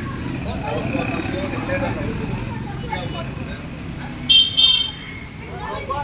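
Street traffic noise with people talking in the background, and a vehicle horn tooting twice in quick succession about four seconds in, louder than everything else.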